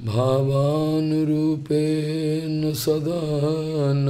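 A man's voice chanting a devotional prayer in long, held, melodic notes, with a brief break for breath about one and a half seconds in.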